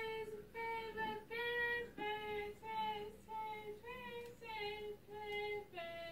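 A woman's voice in a sing-song chant of short, held notes, about one and a half a second, drifting slowly lower in pitch.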